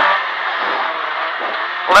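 Rally car's engine and road noise heard from inside the cabin, running steadily with no sharp changes.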